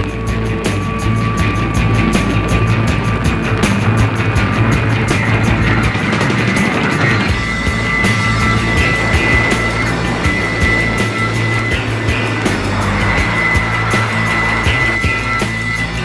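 Instrumental passage of early-1970s hard rock played from a worn vinyl LP, with sustained high notes entering about halfway over a dense, noisy band texture of bass and drums; no vocals.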